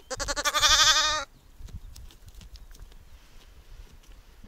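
A newborn lamb, a day or two old, bleats once, a loud wavering call lasting just over a second.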